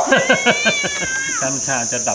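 Domestic tabby cat giving one long, drawn-out meow of about a second and a half, with a steady, slightly wavering pitch that fades out about halfway through.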